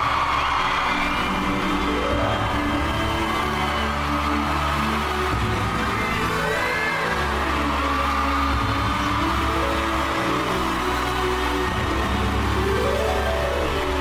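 Background music: a steady low bass drone under layered chords that sweep upward in pitch several times.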